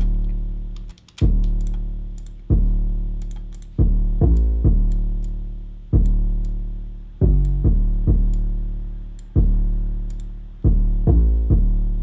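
A distorted 808 bass line playing on its own. Deep notes start sharply and fade out, one about every 1.3 seconds, with quick double notes in between. The grit comes from the Sausage Fattener distortion plugin on the 808.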